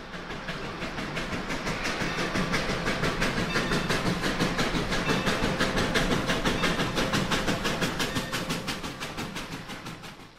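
Steam locomotive chuffing at a quick, even beat, swelling up over the first couple of seconds and fading away near the end.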